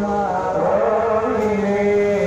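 Arabic chanting from a mosque during Tarawih prayers: a voice holding long notes that glide slowly up and down.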